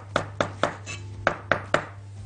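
A cleaver chopping green onion, herbs and garlic on a wooden cutting board: about six quick knocks with a short pause in the middle.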